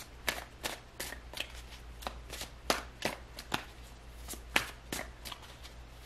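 A deck of tarot cards being shuffled by hand: a run of irregular quick snaps and slaps of cards, about two or three a second, over a steady low hum.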